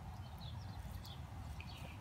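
Quiet outdoor background: a steady low rumble with a few faint, short bird chirps.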